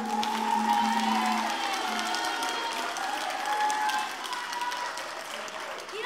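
Audience applause with cheers and calling voices right after a kapa haka group's song ends; the group's last held sung note fades out in the first couple of seconds.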